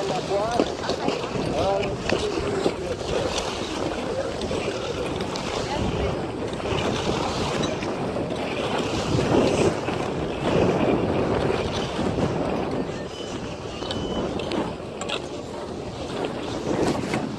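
Wind rushing over the phone's microphone and skis sliding over packed snow while skiing, with people's voices in the background.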